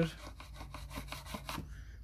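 Carpenter's pencil scratching across an OSB board as a line is drawn, a quick run of small rough strokes that fades shortly before the end.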